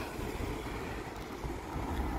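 Steady low outdoor rumble of wind on the microphone and road traffic, with no distinct event standing out.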